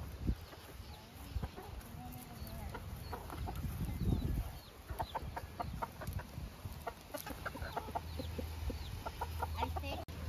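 Backyard chickens clucking: scattered calls at first, then a quick run of short clucks through the second half.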